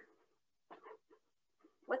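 A pause in speech: near silence, broken by a couple of brief faint sounds about three quarters of a second in.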